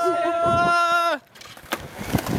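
A steady pitched tone with voices over it, which slides down in pitch and stops just over a second in, followed by a few faint clicks.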